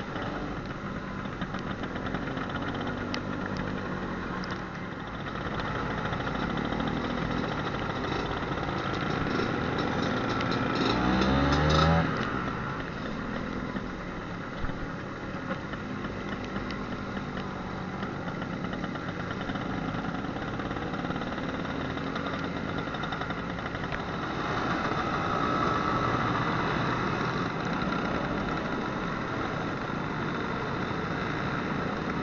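Vintage two-stroke scooter engine running on the move, with wind and road noise. Shortly before halfway the engine note climbs steeply and loudly as it revs, then drops off suddenly.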